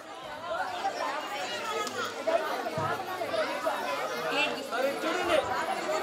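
Many people talking at once: overlapping chatter with no single voice standing out.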